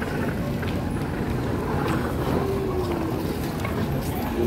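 Wind rumbling on a handheld phone microphone over the general ambience of a busy pedestrian street, with a faint falling tone a little past the middle.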